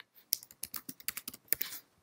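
Typing on a computer keyboard: a quick, uneven run of about a dozen keystrokes.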